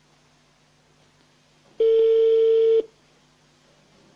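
Telephone ringback tone: one steady beep of about a second over the phone line, the sign that the called number is ringing and has not yet been answered.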